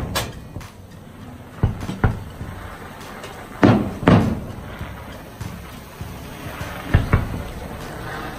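Fireworks shells bursting overhead: a series of sharp bangs, mostly in pairs about half a second apart, every two to three seconds.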